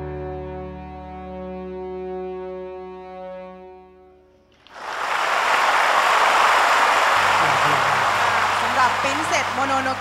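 An ensemble holds its final sustained chord, which fades away over the first few seconds. About five seconds in, the audience breaks into loud applause, with a few voices rising above it near the end.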